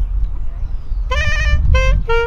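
A saxophone comes in about a second in with a held note, then a second shorter note near the end, opening a jazzy phrase over a steady low rumble.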